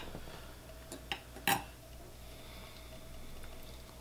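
Faint handling noise at a fly-tying vise: a few small clicks, the sharpest about a second and a half in, over quiet room hum.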